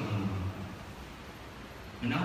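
Low, steady background hum with no distinct events, in a reverberant hall. A low, voice-like sound trails off in the first half-second.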